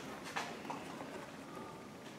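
A couple of faint knocks, twice early on, as zucchini pieces are handled and set down on a wooden cutting board, with quiet rubbing otherwise.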